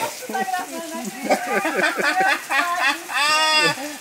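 A man's laughter and loud talk over the steady hiss of heavy rain. About three seconds in comes one loud, drawn-out call.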